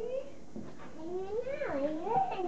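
A high-pitched voice making drawn-out, wordless gliding calls: a short one at the start, then a long one from about halfway that rises and falls in pitch.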